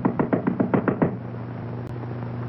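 Rapid knocking on a door, about ten quick raps a second for the first second, then it stops and only a steady low hum remains.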